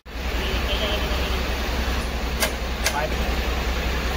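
Steady low machine hum, with two sharp metal clicks a little past halfway, half a second apart, as the wheel loader's front hub parts are handled.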